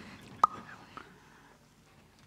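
Faint whispering over low stage room noise, with one sharp click about half a second in and a couple of much weaker clicks after it.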